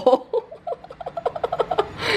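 A woman laughing: a long run of short, quick laughs, about seven a second.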